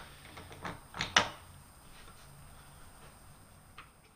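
A few short metallic clicks and knocks as a tool holder is fitted onto a lathe's quick-change tool post, the sharpest just after a second in. A faint low hum follows.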